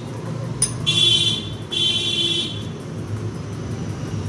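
Two honks of a street vehicle's horn, each about half a second long and a moment apart, over a low steady traffic rumble. A sharp click comes just before the first honk.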